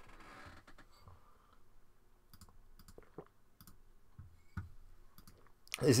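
Faint, irregular clicks of a computer mouse and keyboard, a dozen or so scattered separate clicks, as a copied link is pasted into a web browser and opened.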